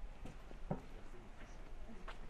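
Footsteps on a paved sidewalk, a few distinct steps over low street ambience.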